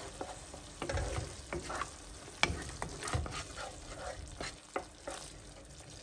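Wooden spoon stirring a thick tomato sauce in a nonstick pot, with irregular scrapes and taps of the spoon against the pan. Under them is a soft steady sizzle of the sauce simmering on the heat.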